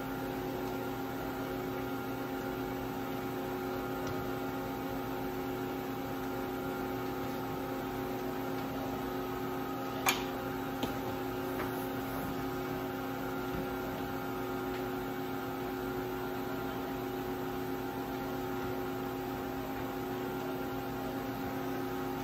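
Steady electrical hum of an idle vertical machining center, several even tones held at a constant level, with one sharp metallic click about ten seconds in and a couple of faint ticks just after as a metal fixture is handled at the fourth-axis rotary table.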